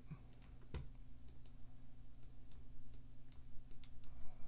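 Computer mouse clicks: about ten scattered single clicks, the loudest about three quarters of a second in, over a faint steady low hum.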